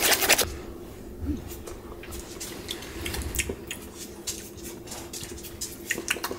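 A utensil stirring a thick cream-cheese and mayonnaise dip in a mixing bowl: dense clicking and scraping against the bowl for the first half second, then scattered lighter clicks and scrapes.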